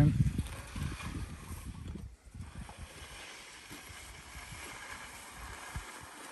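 Wind buffeting the microphone as low rumbling thumps for the first two seconds, easing to faint, steady outdoor background noise.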